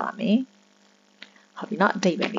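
A voice speaking briefly, then a pause with only a faint steady electrical hum and one small click, before speech resumes near the end.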